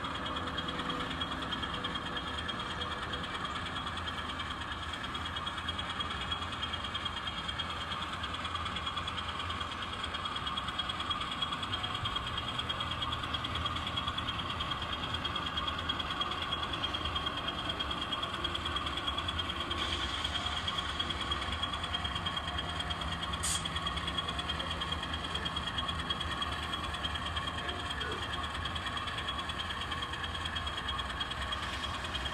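N scale model diesel locomotive running slowly while pulling a short cut of cars, giving a steady, even engine-like running sound. A single sharp click comes about three-quarters of the way through.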